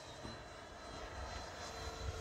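Faint, steady whine of electric ducted-fan model jets (Freewing F-22s) flying high overhead, with a thin high tone held throughout.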